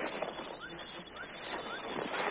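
Rainforest background noise with a small animal's short rising chirp, repeated three times about half a second apart.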